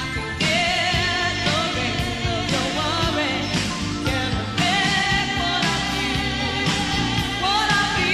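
A woman singing a pop song live into a microphone, with held, bending notes, over a band playing a steady drum beat with keyboards.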